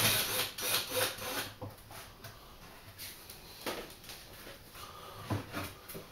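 Wooden fascia board being worked loose and pulled off the front of a bar cupboard: irregular scraping and rubbing of wood with a few short knocks.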